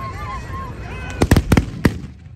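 Ragged volley of black-powder muskets fired by a line of charging fantasia horsemen: several sharp bangs in quick succession about a second in, over crowd voices.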